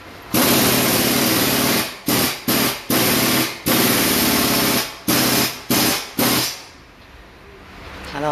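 Pneumatic impact wrench run in about eight bursts, the first about a second and a half long and the rest shorter, each starting and stopping sharply, with loud air hiss.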